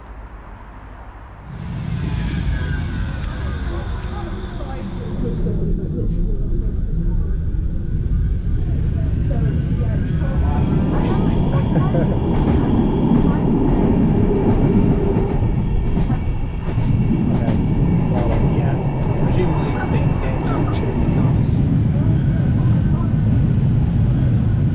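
Manchester Metrolink tram (Bombardier M5000) running, heard from on board: a low rumble of wheels on rail with the traction motors' whine gliding in pitch as it pulls away about two seconds in. It grows louder as the tram gets up to speed.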